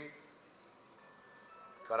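A pause in a man's speech at a microphone, with a faint electronic tune of single high notes, one after another, in the background. The voice trails off at the start and comes back just at the end.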